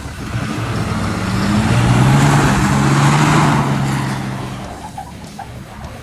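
Dodge Ram pickup's engine revving hard and held high while the truck spins a donut on a dirt road, its tyres spraying dirt. It swells over the first two seconds, stays loudest through the middle, then fades over the last second or so as the truck pulls away.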